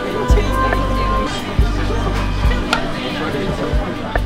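Background music with a steady low bass, and indistinct voices underneath.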